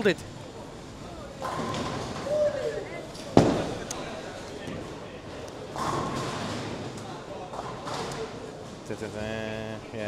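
Ten-pin bowling alley sounds: bowling balls rolling down the lanes and pins being struck, with one sharp crash about three and a half seconds in. A voice is heard near the end.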